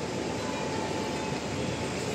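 Steady rumbling vehicle and traffic noise with no distinct events.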